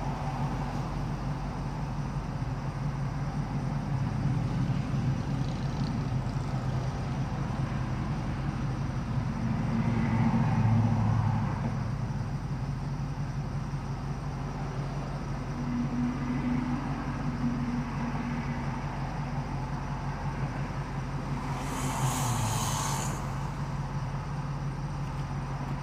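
Car engine idling at a standstill, heard from inside the cabin as a steady low hum, while vehicles pass in front in several swells, the loudest about ten seconds in. A short hiss comes near the end.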